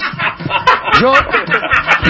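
Skeletor's cackling cartoon laugh from He-Man, a quick run of short laugh bursts.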